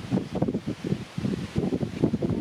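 Wind gusting on the microphone with rustling, a low, irregular buffeting.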